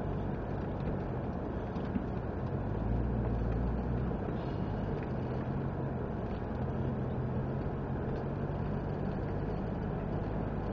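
Off-road 4x4's engine running at low revs as the vehicle crawls along a dirt track, heard from on board, with a steady low hum that grows louder for about a second around three seconds in.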